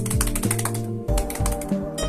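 A fast run of one-handed claps, the fingers slapping against the palm, over background music.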